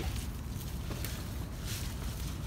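Tomato plants rustling and crackling faintly as ripe tomatoes are picked by hand, over a steady low rumble on the microphone.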